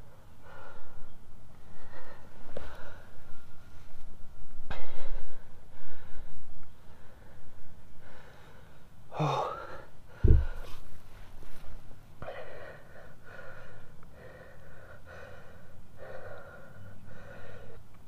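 A man breathing hard and gasping, winded from the exertion of bowing a bow drill to make an ember. There is a single thump about ten seconds in.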